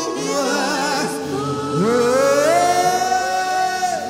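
Gospel worship music with singing voices; a little under two seconds in, a voice slides up and holds one long note almost to the end.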